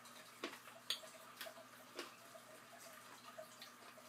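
Faint crunching of someone chewing crisp cinnamon-sugar tortilla chips: about four chews roughly half a second apart in the first two seconds, then fainter.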